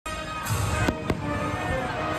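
Aerial fireworks bursting, with three sharp bangs within the first second or so, over music.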